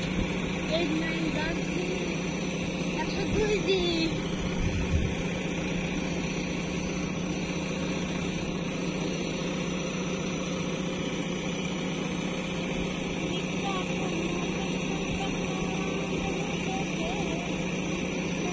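JCB 3DX backhoe loader's diesel engine running steadily under load as the backhoe digs soil, with a couple of low knocks from the digging about three to five seconds in.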